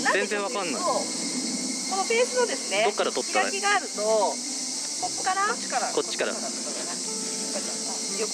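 A steady, high-pitched chorus of insects runs under intermittent talking by women's voices.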